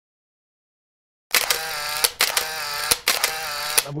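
About a second of silence, then a sound effect added in editing for an animated title card: three repeated segments of a wavering, buzzy pitched sound, each starting with a sharp click, cutting off just before the end.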